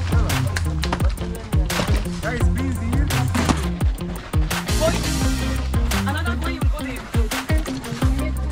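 Electronic background music with a heavy bass line and a steady beat, with voices faintly underneath.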